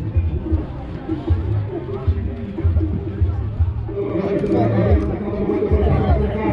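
Music with a heavy bass beat playing over a crowd's chatter.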